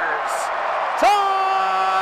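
Radio play-by-play announcer's drawn-out goal-call shout: a long held note trails off at the start, then a second held shout on one steady pitch begins about a second in.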